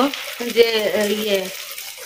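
Food sizzling in a pan on a gas stove, a steady high hiss, under a woman's drawn-out spoken word in the first part.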